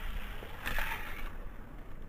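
A Hot Wheels die-cast toy car rolling faintly along orange plastic track as it coasts to a stop, with a brief louder scraping hiss a little past half a second in.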